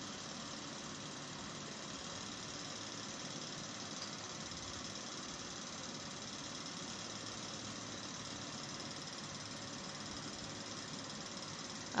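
Steady, even background hiss with a faint low hum, unchanging throughout; no speech or music.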